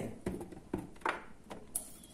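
A few soft, separate clicks and light knocks as a hand takes strips of red pepper from a steel bowl and lays them on a baking tray.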